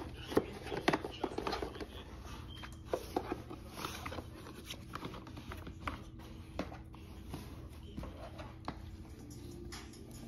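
Fabric padding of a Doona infant car seat cover rustling and being pressed into place, with scattered small clicks and knocks from its snaps and plastic frame.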